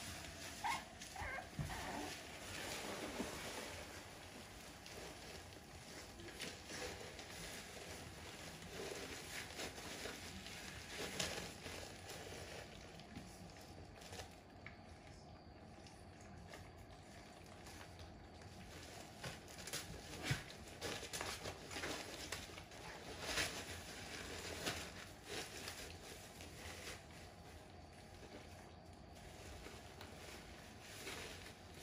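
Faint rustling and scratching of American bully puppies shuffling about in wood shavings in a plastic pool, with a few small squeaks in the first couple of seconds.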